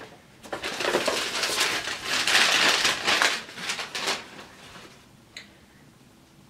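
Paper shopping bag crinkling and rustling as hands rummage inside it to pull out a jar candle. The crinkling starts about half a second in, is loudest in the middle and dies away after about four seconds.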